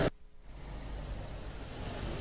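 Roadside traffic noise: a steady, even rumble and hiss of vehicles on a road, starting after a brief silent gap at the very start.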